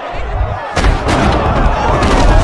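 Film fight-scene soundtrack: heavy blows landing, with a sharp hit about three-quarters of a second in and a deep rumble, over the score.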